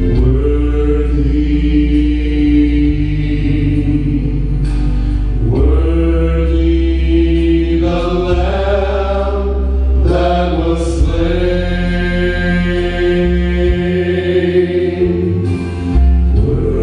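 Male gospel vocal trio singing in harmony through microphones and a PA, holding long chords over a steady bass accompaniment. The chord steps up to a higher pitch about five seconds in and again about ten seconds in.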